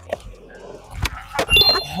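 Skateboard wheels rolling on concrete, then a sharp tail pop about a second in and a louder landing thud half a second later: a 360 flip landed, though sketchily.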